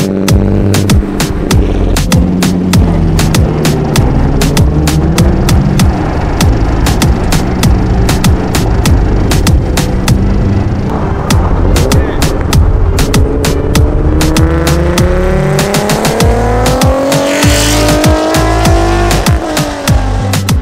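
Reggaeton-style instrumental beat over a car engine: in the second half the engine's pitch climbs steadily for about six seconds as it accelerates, then drops away just before the end.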